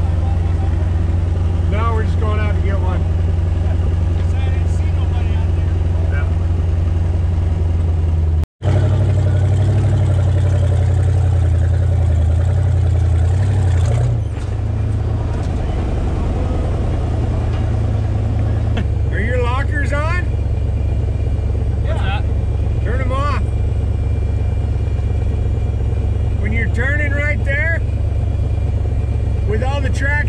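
Jeep engines running with a steady low rumble: first heard from inside the cab, then, after a sudden cut about eight seconds in, outside beside idling Jeeps. Indistinct voices come in now and then.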